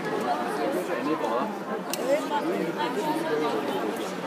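Indistinct chatter of several overlapping voices in a large hall, with one sharp click about two seconds in.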